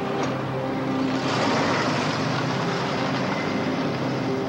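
A car's engine and road noise as it drives, growing louder for a moment about a second in, with a low film score playing underneath.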